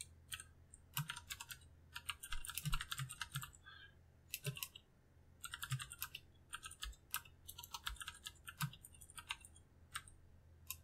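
Computer keyboard typing, keystrokes coming in quick runs with short pauses between them.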